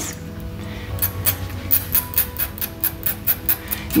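Quick, short rasping strokes of a hand file on the cut end of a sterling silver wire, about five or six a second and starting about a second in, smoothing off the rough, jagged end. Steady background music plays underneath.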